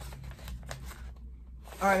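Paper sandwich bag rustling and crinkling softly as it is handled, with a few short crackles in the first second. It goes quiet briefly before a spoken word near the end.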